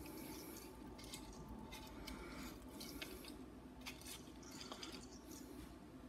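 Faint rustling of Christmas tree branches and light clicks as an ornament is settled onto a branch.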